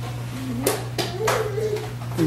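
A toddler making short closed-mouth humming sounds, with a few sharp claps or taps in the middle, over a steady low background hum.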